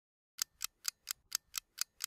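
Clock-ticking sound effect: short, sharp ticks at about four a second, starting about half a second in.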